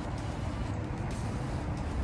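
Wind buffeting the phone's microphone outdoors: a steady rushing noise, heaviest in the low end.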